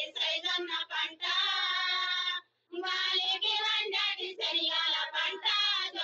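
Women singing a song to the seeds, in melodic phrases with long held notes, with a short break about two and a half seconds in.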